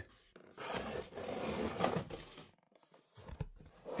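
Cardboard box flaps being opened and handled: about two seconds of rustling and scraping cardboard, then a brief pause and a few light knocks near the end.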